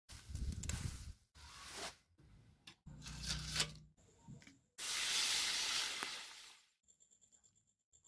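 Short clips cut together: cassava leaves rustling and tearing as they are picked from the plant, then a couple of seconds of steady hiss in the middle, then faint rapid ticking near the end.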